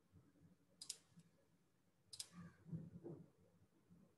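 Two sharp computer mouse clicks, one about a second in and one about two seconds in, against near silence, made while a screen share is being set up.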